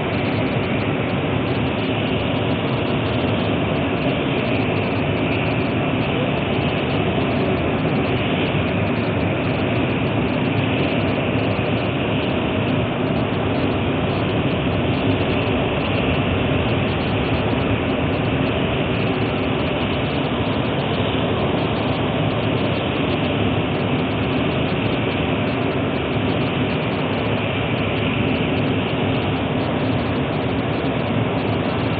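A large machine running steadily: an even, unbroken drone with a faint low hum and no change in level.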